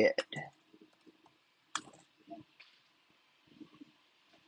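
A few clicks from a computer keyboard as typed text is finished, then one sharp click a little under two seconds in, with a few faint small clicks after it.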